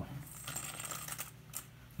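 Small one-gram silver bars being handled, a quick run of light metallic clicks and rattles.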